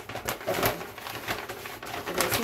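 A brown paper grocery bag crinkling and rustling in irregular bursts as groceries are handled and pulled out of it.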